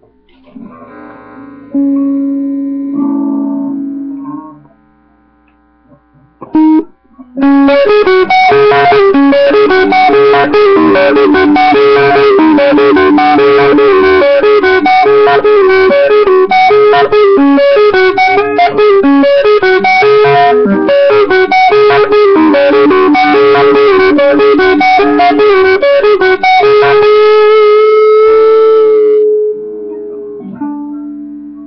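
Electric guitar played loud: a few notes at first, a short pause, then from about seven seconds in a fast, dense run of notes that saturates the webcam microphone, ending on a long held note.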